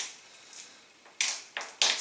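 Coins being set down on a sheet of paper on a glass tabletop: a few short clinks in the second half, one with a faint high ring.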